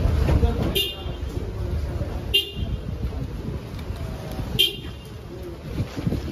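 Three short vehicle horn toots, about a second and a half to two seconds apart, over voices and traffic noise.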